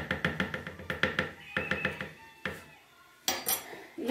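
A metal spoon tapping quickly and repeatedly against the rim of a plastic blender jar, knocking margarine off it, about six taps a second with a brief ringing tone to each. The taps die away after about two and a half seconds, and a couple of sharper knocks come near the end.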